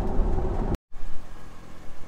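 Cabin drone from a 2016 Corvette Z06 on the move: the supercharged V8 and road noise run steadily under the roof. A little under a second in, the sound cuts out abruptly at an edit. A quieter low rumble follows.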